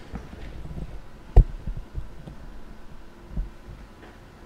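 Low thuds and knocks of things being moved and handled at a desk, over a low hum. The loudest is a sharp knock about a second and a half in, and a softer thud comes near the end.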